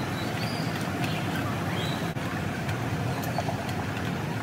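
Steady ambient noise of a large airport terminal concourse, with a low rumble and a few faint, short high chirps.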